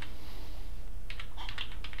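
Computer keyboard keys clicking as a short word is typed, a quick run of about four or five keystrokes in the second half.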